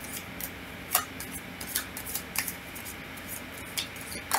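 Tarot cards being shuffled by hand: soft rubbing of cards with a few irregular sharp clicks as cards snap against the deck, the clearest about a second in and near the end.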